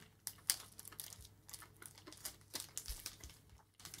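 Faint, irregular clicks and crackles of a person chewing a white chocolate bar with crunchy hundreds and thousands in it.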